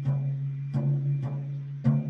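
Floor tom head tapped with a drumstick about four times, roughly twice a second, its low pitch ringing on steadily between strikes. The taps go beside the tension rods to compare their pitch while tuning the head.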